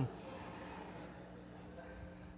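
Quiet room tone through the PA with a steady low electrical hum, and a faint intake of breath into the microphone about halfway in. The falling end of a man's drawn-out shout cuts off right at the start.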